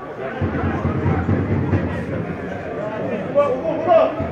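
Indistinct chatter of nearby spectators talking among themselves, over a low background of crowd noise.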